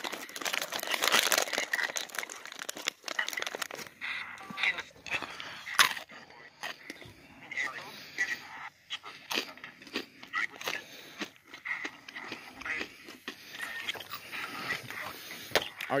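Spirit box sweeping through radio stations: choppy bursts of static chopped every fraction of a second, with brief fragments of radio voices.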